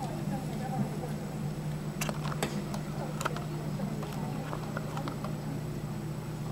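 Steady low hum with faint, indistinct voices, and a quick run of sharp clicks between about two and three and a half seconds in.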